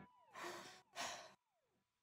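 Two short, faint breathy exhalations like sighs, about half a second apart, over the dying tail of the previous notes; otherwise near silence.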